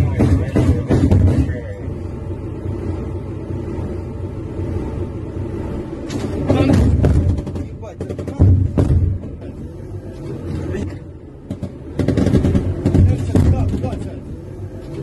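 Bursts of heavy automatic gunfire from an armoured fighting vehicle's weapons, heard from inside the vehicle, in clusters at the start, in the middle and near the end. A steady low rumble and muffled voices sit between the bursts.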